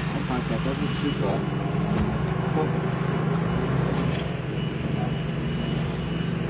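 Steady low hum of a vehicle engine running, with faint voices in the background.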